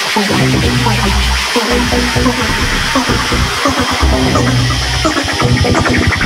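Electronic dance music from a DJ set: a heavy, sustained bass line under a steady beat, with a quick run of rapid hits near the end.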